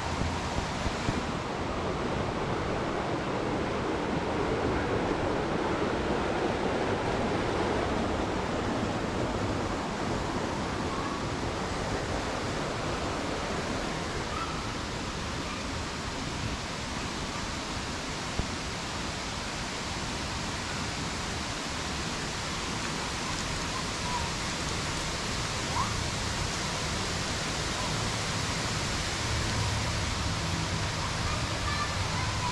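Steady rushing of a flowing stream, a little louder in the first several seconds and easing off somewhat past the middle.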